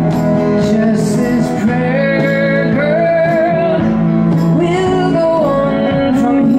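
Live acoustic folk song: strummed acoustic guitar and upright bass with a wavering melody line on top.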